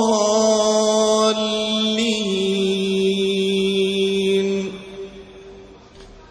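Male Qur'an reciter in melodic tajweed style holding one long note to draw out the close of a verse. The note steps down in pitch about two seconds in and ends a little before five seconds, leaving a short fading echo of the hall.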